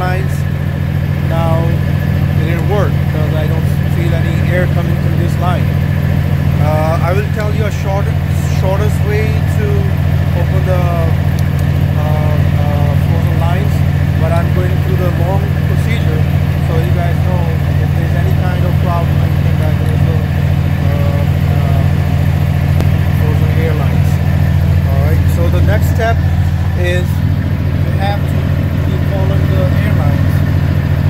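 Semi truck's diesel engine idling steadily, a loud, even low drone.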